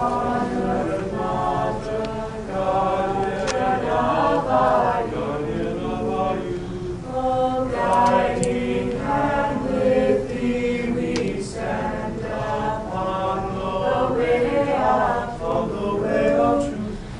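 Small mixed choir of men's and women's voices singing unaccompanied, in sustained held notes.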